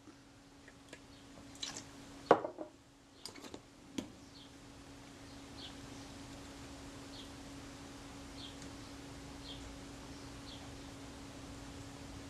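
Quiet bench handling: a few light clicks and taps, the sharpest about two seconds in, then faint, evenly spaced scrapes of a scalpel blade working under glued-on leatherette that naphtha has softened. A low steady hum runs beneath.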